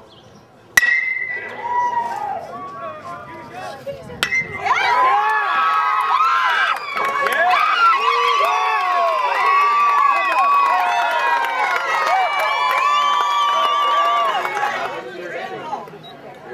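A metal baseball bat hits the ball with a sharp ringing ping about a second in. From about four seconds in, a crowd of spectators cheers and shouts for about ten seconds, then dies down near the end.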